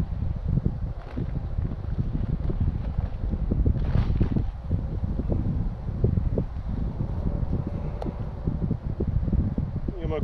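Wind buffeting the microphone in an uneven low rumble, with a brief rustle about four seconds in and a couple of faint clicks.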